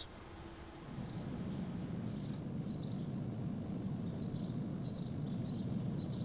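Outdoor ambience: a steady low rumble with short, high bird chirps repeating at irregular intervals, starting about a second in.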